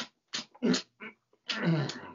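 A man's voice making comic gulping and grunting noises, several short vocal bursts and then a longer one falling in pitch near the end, acting out a big drink.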